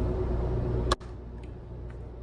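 A steady low background drone from the animated story's soundtrack. It cuts off with a click about a second in and gives way to faint room hiss.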